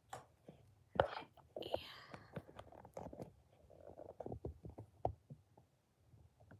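Quiet whispered speech mixed with handling noise of the phone that is filming: sharp clicks and knocks as it is gripped and moved, the loudest click about a second in.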